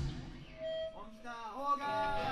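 A live rock band stops together on a break, and the full guitar, bass and drum sound cuts off at once. In the gap a lone voice calls out with a sliding, rising and falling pitch.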